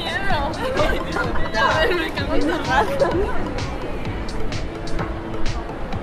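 People talking nearby in an outdoor pedestrian street, loudest in the first few seconds, over a background of chatter, with music playing.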